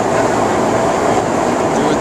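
Loud, steady drone inside the cargo hold of a military transport plane in flight: engine and airflow noise carried through the uninsulated fuselage.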